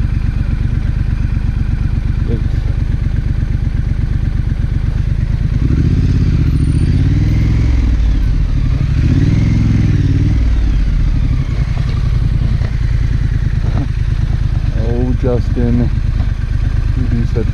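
2019 Triumph Scrambler's parallel-twin engine running under way at low speed, revving up and back down twice around the middle.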